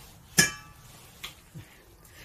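A single sharp metallic clink with a short ring, kitchen metalware knocked or set down, followed by two faint light knocks.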